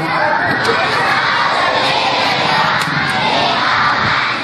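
A crowd of schoolchildren shouting and cheering together, many voices at once at a steady, loud level.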